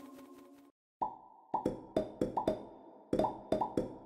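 Cartoon sound effects: after the last of a jingle dies away and a short silence, a run of about eight quick pitched plops or taps comes in an uneven rhythm, each a sharp hit with a brief ringing tone.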